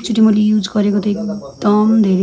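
A woman's voice, much of it held at an even pitch with short breaks between stretches.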